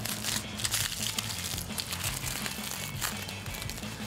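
Aluminium foil crinkling in short bursts as strands of hair wrapped in it are handled and pressed, over steady background music.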